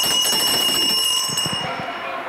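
A bell ringing rapidly and steadily, like an alarm clock going off; it stops shortly before the end.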